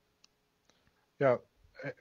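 A pause with almost no sound, then a man's voice saying 'yeah' about a second in, followed by the start of another word near the end.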